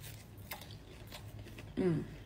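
Faint chewing of a mouthful of pastry topped with cream and strawberries, with a few soft crunches, then a short spoken word near the end.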